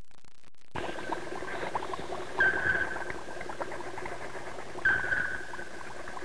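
Bubbling and gurgling of laboratory glassware, many short popping blips, over a steady high whistling tone that swells louder twice. It starts about a second in.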